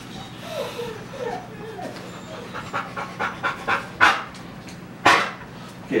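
Wirehaired pointing griffon puppy panting in quick, even breaths while it works a feathered wing lure, with two sharper, louder breaths about four and five seconds in.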